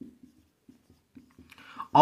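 Marker pen writing on a whiteboard: a run of faint, short, irregular strokes as a word is written out.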